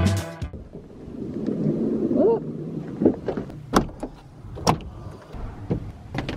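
Background music cuts off about half a second in. Then come scattered sharp knocks of boots stepping on a plywood floor inside a van, with a short rising squeak a couple of seconds in.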